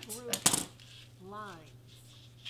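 Scissors snipping crepe streamer paper and being put down on the cutting mat: a short, sharp clatter of clicks about half a second in.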